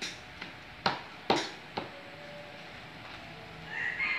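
Chopsticks clicking against a small stainless-steel bowl as food is scooped into the mouth: about five sharp clicks in the first two seconds, two of them louder than the rest. A higher-pitched sound begins near the end.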